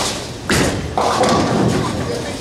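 Bowling ball thudding onto the lane about half a second in as it is released, then rolling down the lane with a steady rumble.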